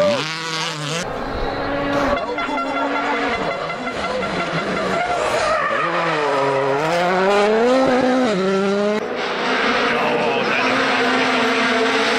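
Rally car engines at high revs passing on a gravel stage, the engine note climbing and dropping with throttle and gear changes, in several separate passes with abrupt changes between them.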